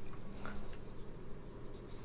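Faint handling noises: a few light ticks and small rustles from a plastic cup and a glass bowl of dry cereal being handled.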